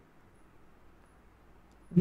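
Near silence: faint steady room tone, with a man's voice starting right at the end.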